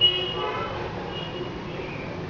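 Outdoor traffic noise with a vehicle horn sounding that cuts off about half a second in, followed by a brief fainter toot a little after one second.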